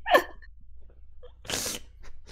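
A man laughing hard: a short laughing cry with falling pitch at the start, then about a second and a half in a loud, breathy gasp of laughter.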